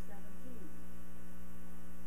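Steady electrical mains hum on a sound-system feed.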